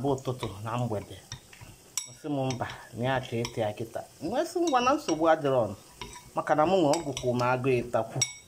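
A metal spoon stirring thick bean batter in a ceramic bowl, with a few sharp clinks of spoon on bowl. Over it a person sings with a wavering pitch, louder than the stirring.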